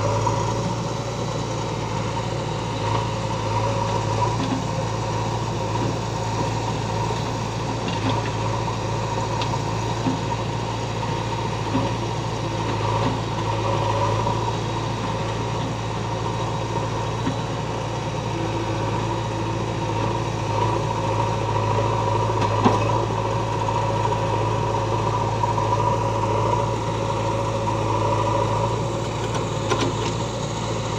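Diesel engines of a JCB 3DX backhoe loader and a Mahindra 575 DI tractor running steadily side by side while the backhoe works, with a continuous low hum. A single sharp knock comes about two-thirds of the way through.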